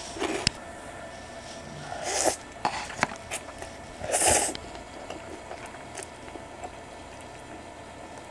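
A person slurping spicy instant noodles from a cup with chopsticks: short slurps, a fainter one about two seconds in and the loudest about four seconds in, with small clicks of chopsticks and mouth sounds between.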